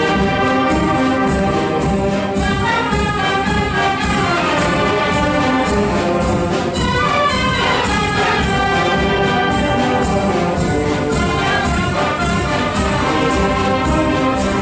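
Wind band playing a piece live, the full ensemble with brass prominent, sustained chords over a steady percussion beat.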